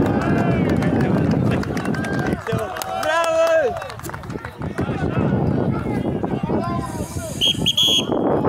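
Spectators and players shouting and cheering after a goal in an amateur football match, many voices calling out at once, with one loud shout about three seconds in. A short, high whistle blast sounds near the end.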